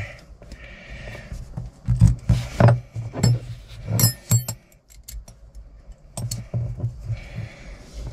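Small metal clinks and rattles of a nut and wrench against the clutch cable linkage of a Case IH 75C tractor as the nut is worked onto its thread, in scattered bursts with a few ringing clinks about four seconds in.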